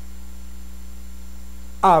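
Steady electrical mains hum in the recording, with a single spoken syllable from a man near the end.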